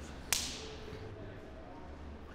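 A single sharp smack of the game ball about a third of a second in, with a short ring-out in a large hall, over a low steady hum.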